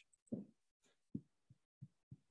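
Near silence broken by four brief, soft, low thumps, the first about a third of a second in and the other three over the following second.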